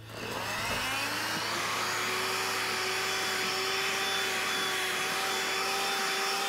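Vacuum cleaner switched on, its motor whine rising over about the first second and then running steadily.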